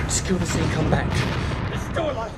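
Loud, deep rumbling film sound design, with several sharp cracks and a person groaning during a violent struggle.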